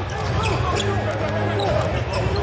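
A basketball being dribbled on a hardwood court, with rubber sneaker soles squeaking in quick short chirps as players cut and shuffle.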